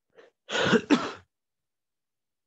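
A person clearing their throat: one short, rough burst with two pulses, starting about half a second in.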